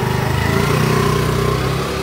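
Small motor scooter engine running steadily, its pitch rising a little about half a second in as it pulls away.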